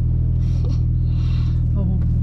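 Porsche 911's flat-six engine running at a steady pace, heard from inside the cabin as a low, unchanging drone.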